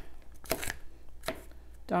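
Knife roughly chopping garlic cloves on a cutting board: a few separate, unevenly spaced strokes.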